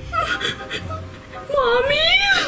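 Pretend crying in a small child's voice, voicing a lost toddler doll: short whimpers, then a longer wailing sob that rises and falls near the end.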